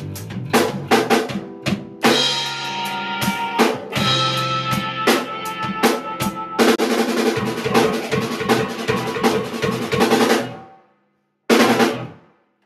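Three-piece instrumental rock band playing: drum kit, electric bass and electric guitar together, with busy snare and kick. The band stops about ten and a half seconds in, then plays one short final hit together just before the end.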